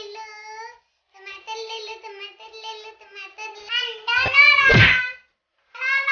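A small child singing or chanting in a high voice, in short sing-song phrases with brief pauses. About four seconds in, a thump comes with the loudest, rising vocal note.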